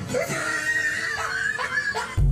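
A high-pitched, wavering scream held for nearly two seconds, over soft background music.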